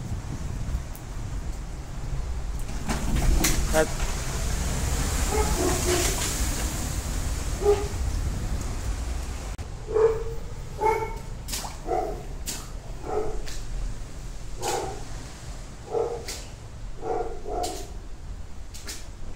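Wind rumbling on the phone microphone, with a faint voice a few seconds in; from about halfway, a dog barks in short single barks roughly once a second, with clicks and knocks of the phone being handled.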